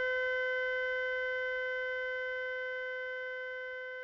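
A single steady electronic tone with a stack of overtones, held at one pitch and slowly fading away.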